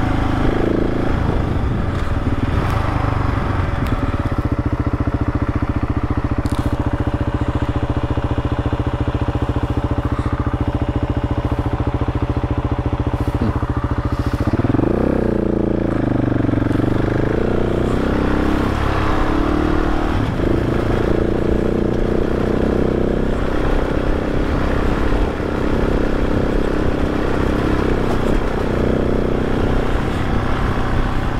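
Adventure motorcycle engine running steadily while riding a dirt track, with the tyres crunching over dirt and gravel. About halfway through, the engine note dips and rises again as the bike slows and picks up through a turn.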